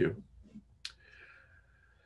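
A single sharp click a little under a second in, followed by a faint thin high tone that lasts about a second.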